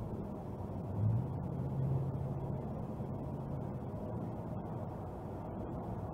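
Car cabin noise at highway speed, recorded by a dash cam: a steady engine and tyre rumble. A low engine hum swells about a second in as the car speeds up, then settles.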